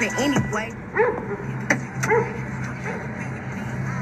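A rap track played through a pair of Elegiant 10 W Bluetooth computer speakers: a rapped female vocal with short vocal cries that rise and fall in pitch over a steady bass line.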